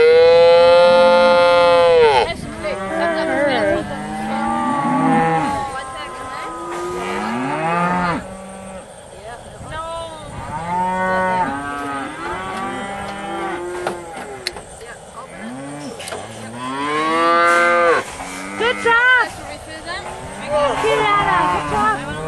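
Calves bawling over and over, with several calls overlapping at different pitches. A long, loud bawl comes at the start and another loud run of calls about three quarters of the way through. The cries come from calves being restrained in a cradle for branding and castration.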